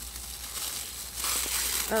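Pink gift wrapping crinkling and rustling as the wrapped gift is handled and opened, louder past the middle.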